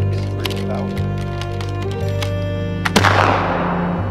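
A black-powder flintlock rifle fires once about three seconds in: one sharp shot trailing off in echo through the trees, over background music.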